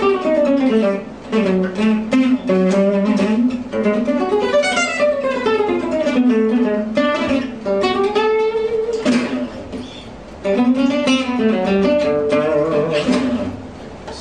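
Selmer-Maccaferri style gypsy jazz acoustic guitar played with a pick: a fast dominant-ninth arpeggio lick, run down and up the strings several times in different places on the neck, with a short break about ten seconds in.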